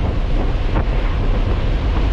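Nissan 300ZX driving, heard as a steady rumble of road and wind noise with a heavy low end.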